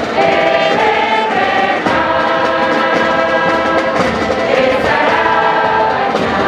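A choir singing slow, sustained chords that change about once a second.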